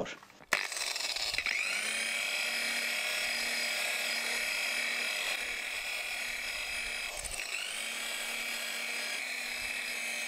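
Electric rotary polisher with a foam buffing pad running on a wheel's fresh 2K clear coat, cutting it back with rubbing compound to a gloss. The motor starts about half a second in and then runs with a steady whine, its pitch shifting briefly about a second and a half in and again about seven seconds in.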